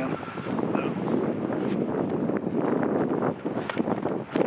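Wind buffeting the camera microphone: a loud, continuous rough rumble with a few sharp clicks near the end.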